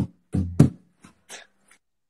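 Rebolo, a Brazilian pagode hand drum, struck by hand: a couple of deep strokes about half a second in, then a few faint light taps.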